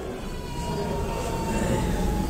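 A pause in speech filled by a low, steady background rumble and a faint, thin high tone that holds steady and sinks very slightly in pitch.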